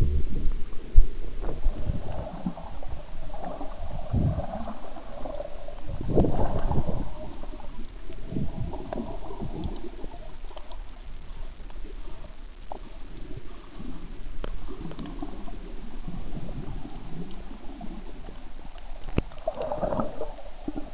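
Muffled underwater gurgling and sloshing heard through a submerged camera, with irregular low thumps and bursts. The loudest is a sharp knock about a second in, and a longer surge comes around six seconds in.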